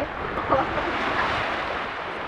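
Small waves washing up over flat wet sand in a thin, rushing sheet, swelling about a second in.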